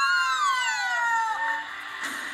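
Excited women's screaming in celebration: a long high cry that slides down in pitch over about a second and a half and fades near the end.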